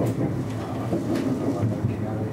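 Intercity train running over a series of switches, heard from inside the train: a steady low rumble with a few sharp clacks as the wheels cross the points, near the start, about a second in and near the end.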